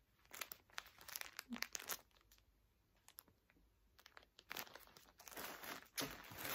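Faint crinkling of the plastic wrapping around a bundle of yarn balls as it is handled, in two spells with a quiet gap of about two seconds between them, ending in a broader rustle of movement.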